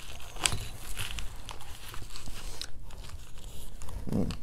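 Rustling and crinkling as hands pull a paper promo card out from under the elastic straps of a packed first aid kit compartment, with a couple of short crackles.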